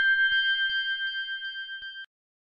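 Closing notes of a track: a few high, chime-like tones held steady together, with a soft tick nearly three times a second, fading and then cutting off.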